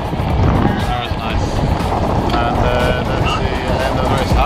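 Strong wind buffeting the microphone aboard a sailboat heeling through rough, choppy water: a loud, steady low rumble, with a voice and music faintly underneath.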